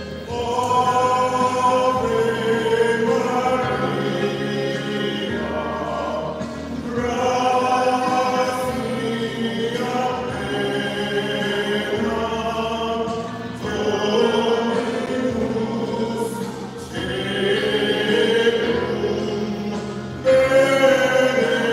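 A hymn sung by many voices, led by a man singing at the microphone. It goes in long held phrases with short breaks between them, over steady low notes that change every few seconds.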